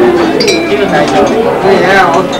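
People talking in a crowd, with a sharp metallic clink that rings briefly about half a second in.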